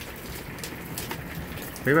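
Hail and rain falling steadily, a dense patter of small ticks over a hiss.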